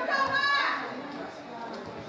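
A high-pitched shout from a young footballer on the pitch, lasting about the first half second, followed by quieter open-air field sound.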